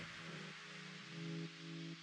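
Quiet breakdown in an electronic house track: with the beat gone, a fading wash of noise is left, and soft, held synth chord notes come in about a second in.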